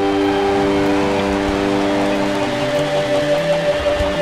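Live rock band holding a long sustained chord, several steady notes ringing together with no drumbeat, after the strummed guitar and drums stop.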